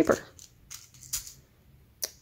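A few faint, brief clicks and light handling noises, the sharpest about a second in, as a sewing needle is taken from a small metal tube-shaped needle case.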